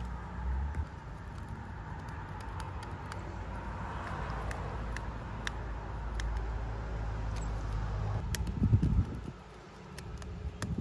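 Faint clicks and scrapes of a small Phillips screwdriver and copper wires being worked into the terminals of a 20 A electrical inlet, over a steady low rumble. A few louder low thuds come near the end as the inlet is handled.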